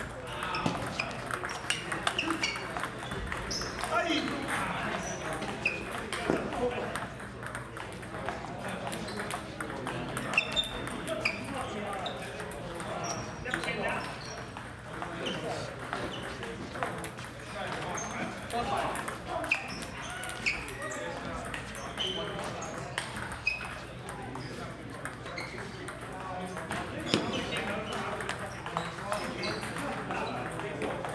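Celluloid-type table tennis balls clicking off paddles and the tabletop in quick rallies, many short irregular clicks throughout, over background chatter.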